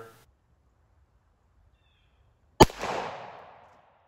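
A single pistol shot from a Kimber Custom II 1911 about two and a half seconds in, a sharp crack whose report echoes and dies away over about a second.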